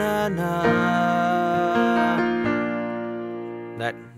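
Digital piano playing held chords, including an E-flat major chord. The notes ring on and fade out over the last couple of seconds.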